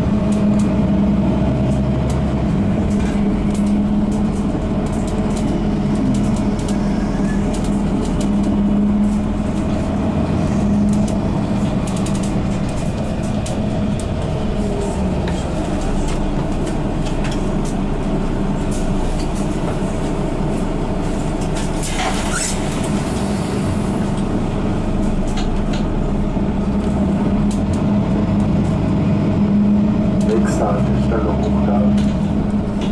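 Mercedes-Benz Citaro G articulated bus with Voith automatic gearbox heard from inside the passenger cabin while driving: a steady engine and drivetrain drone at an even pitch over road rumble and light interior rattles. About 22 seconds in there is a brief high-pitched squeal.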